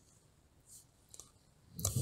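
Near silence between sentences, with two faint short clicks about a second apart in the middle.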